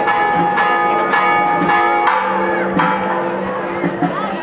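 Church bells pealing, struck several times a second in an uneven rhythm, each stroke ringing on under the next.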